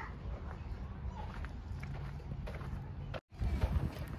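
Low rumble of handling and air noise on the microphone of a phone camera carried while walking, with a sudden drop-out about three seconds in.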